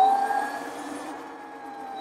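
Electric motor of an Oset 24R electric trials bike whining steadily under way, its pitch sinking slowly as the bike slows a little. A hiss of tyre and wind noise fades out about a second in.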